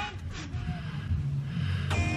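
Wind rumbling on the microphone, with a faint short chirp about half a second in. Music comes in near the end.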